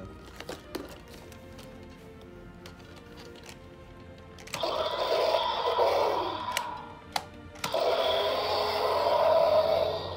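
Electronic roars from two Indominus Rex dinosaur toys played through their small speakers, one after the other: a rough, falling roar about halfway in, then a second roar of about two seconds near the end. A few light plastic clicks come before the roars.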